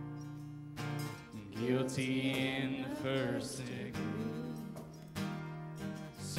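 Acoustic guitar strumming chords while voices sing a worship song.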